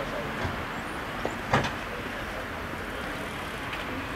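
Steady outdoor street noise, with a sharp knock about one and a half seconds in and a couple of fainter clicks before it.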